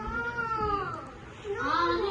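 A child's high-pitched, drawn-out cry that rises and falls in pitch over about a second, followed by a second rising cry near the end.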